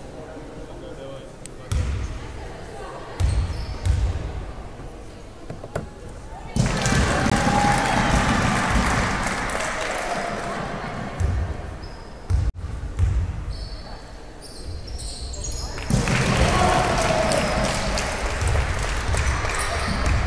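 Basketball bouncing on a sports-hall floor, single thuds spaced a second or so apart, as at the free-throw line. Twice the hall fills with crowd noise and shouting, a few seconds each time.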